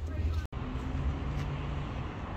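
Steady car road noise with a low rumble, broken by a sudden brief silence about half a second in, after which the noise goes on with more hiss.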